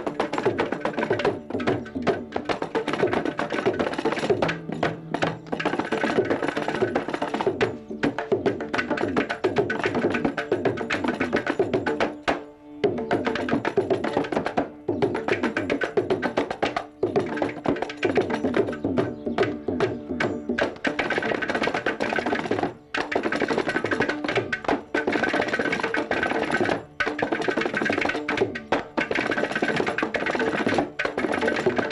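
Carnatic percussion ensemble of mridangam, kanjira and ghatam (clay pot) playing a fast, dense tani avartanam in Adi talam, with rapid hand strokes broken by brief pauses.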